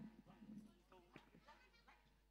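Near silence with a few faint voices in the background.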